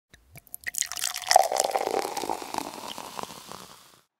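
Intro sound effect of liquid dripping and pouring, a few drips at first, then a dense splashy burst that fades out near the end.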